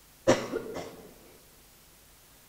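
A person coughing twice in quick succession about a quarter second in, the first cough louder.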